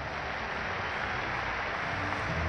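Steady noise of a large stadium crowd, a dense hubbub of many voices with no single sound standing out.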